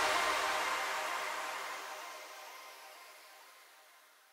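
The last chord of electronic background music ringing out and fading away, gone by about three and a half seconds in.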